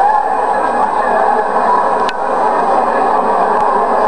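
Steady loud din of a packed hall: many people talking at once, blurred into one continuous crowd noise.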